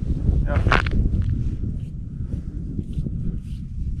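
Wind buffeting the microphone on open ice: a loud, uneven low rumble, with one brief sharper sound less than a second in.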